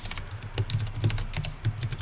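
Computer keyboard typing: quick, irregular key clicks as code is copied and edited.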